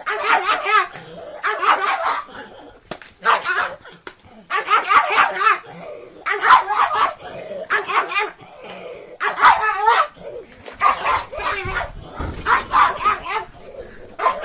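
A pug barking in repeated short bursts, about ten in all, while it tugs at and shakes a plastic bag in play.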